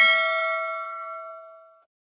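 Notification-bell sound effect: a single bright ding, several pitched tones ringing together and fading out before the end.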